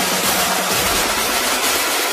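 Electronic dance music with a driving beat under a dense, noisy synth layer; near the end the bass drops away.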